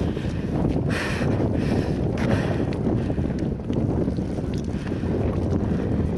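Wind buffeting the microphone: a steady low rumble, with a few brief hisses about a second in.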